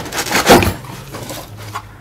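Cardboard box rustling and scraping as a hand rummages inside it, with the loudest scrape about half a second in.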